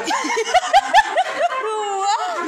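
A person laughing out loud in a quick run of about seven short 'ha' bursts, with a few soft thumps among them.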